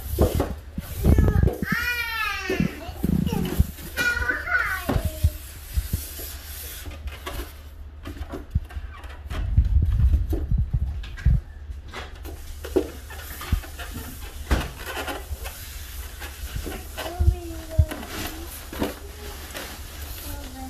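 Young children vocalising and babbling without clear words, with a high squeal that rises and falls about two seconds in. Scattered knocks and handling noises from the children pushing and handling a foam box on the floor, loudest around the middle.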